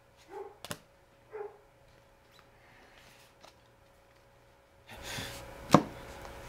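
A playing card slapped down hard onto a wooden tabletop: one sharp, loud smack near the end. Two short calls about a second apart sound near the start.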